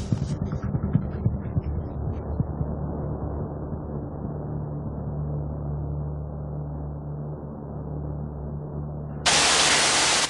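Background music with a beat fades over the first two seconds into a low, steady drone. About nine seconds in, a loud hiss of shower water spraying starts suddenly.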